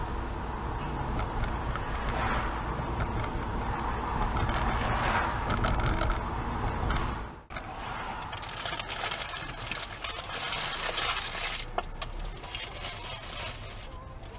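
Car driving noise heard from inside the car: a steady low road and engine rumble that breaks off about halfway through, followed by a stretch of dense, irregular clicking and rattling over quieter driving noise.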